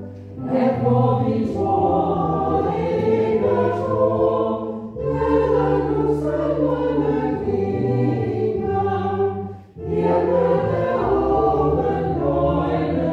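Church choir singing a Danish hymn in a choral arrangement, with keyboard accompaniment holding low notes underneath. The singing breaks off briefly between phrases just after the start and again a little before ten seconds in.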